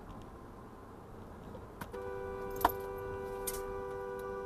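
Road noise inside a moving car, then about two seconds in a car horn sounds and is held steadily, with one sharp knock shortly after it starts. The horn is a warning at a pickup truck cutting into the lane ahead.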